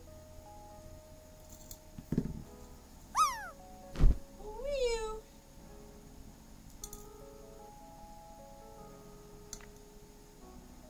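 A cat meows twice: a short falling meow about three seconds in, then a longer one that rises and falls about a second later. A sharp thump falls between the two meows and is the loudest sound, and soft background music runs underneath.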